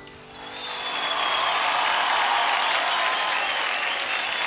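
Studio audience applauding, swelling up about half a second in and holding steady, with music faintly underneath.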